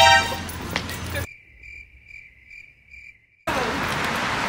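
The tail of a voice, then a quiet stretch of high-pitched chirps about twice a second, typical of crickets at night; about three and a half seconds in, a sudden loud, even rush of outdoor noise cuts in.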